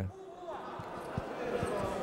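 Boxing bout in a hall: several soft, irregular thumps from the boxers' footwork and gloves in the ring, over faint voices in the room.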